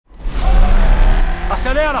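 Deep low car engine rumble under a music bed, starting abruptly; a man's voice comes in near the end.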